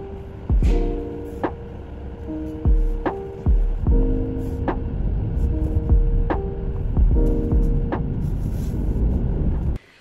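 Background music: plucked, sustained notes over a soft, steady low beat, cutting off suddenly just before the end.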